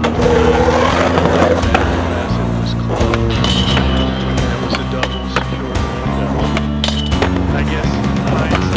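Skateboard wheels rolling over a concrete sidewalk, heard under a music track of held notes that changes chord every second or so.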